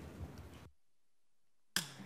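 Faint footsteps on a stage floor over quiet hall noise, then the sound cuts out completely for about a second and comes back suddenly near the end.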